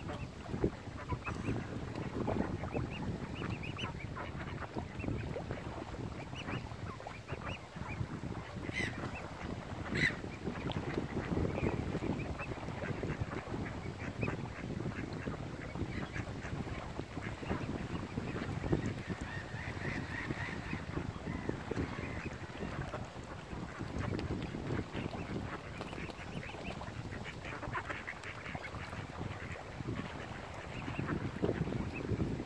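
Waterfowl calling: mallard ducks quacking and mute swans calling, with a few brief sharper calls, over a steady low background noise.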